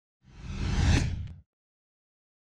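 Whoosh sound effect with a deep low rumble for an animated logo intro. It swells over about a second, then cuts off sharply at about a second and a half.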